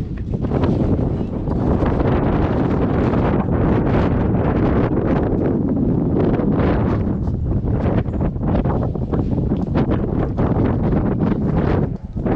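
Wind blowing across the camera microphone on a high open-air observation deck: a loud, steady rumble.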